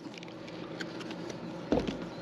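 A pause between words: faint steady background hum, with a light click and a soft low thump near the end as a cardboard product box is handled.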